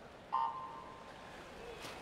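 Electronic swimming start signal: a steady beep of one tone that comes in suddenly about a third of a second in and fades over about a second, sending the swimmers off. A short splash of noise follows near the end as they hit the water.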